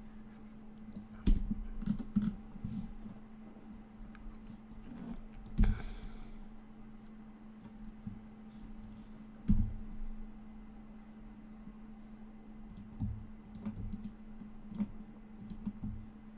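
Scattered clicks of a computer mouse and keyboard, with a few louder knocks, over a steady low hum.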